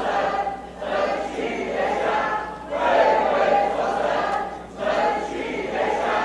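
A large group of legislators chanting a slogan in unison, the same phrase repeated about every two seconds with short breaks between.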